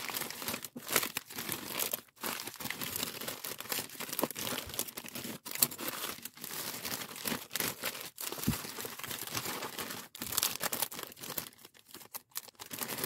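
Bubble-wrapped packages and a plastic poly mailer bag crinkling and rustling as they are handled and packed, in irregular crackly bursts with brief pauses.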